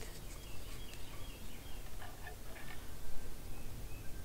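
Faint birds calling in woodland: scattered short high chirps, with a few stronger calls about two seconds in, over a steady low outdoor rumble.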